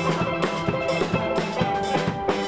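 Steel band playing a fast, rhythmic carnival tune: ringing steel pan notes over a steady drum-kit beat.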